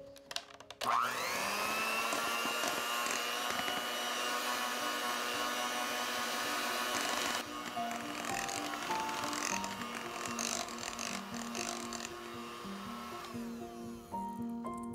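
Kenwood electric hand mixer starting up about a second in, its motor whine rising fast to a steady pitch as the beaters run through thick pound cake batter on low speed. The mixer gets somewhat quieter after about seven seconds.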